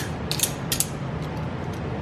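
Metal valve spring compressor tool being worked in the hands, giving a handful of sharp metallic clicks in the first second and lighter clicking after.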